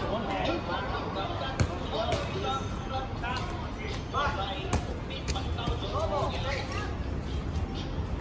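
Dodgeballs smacking against the hard court and players with several sharp hits, mixed with players shouting to one another during play.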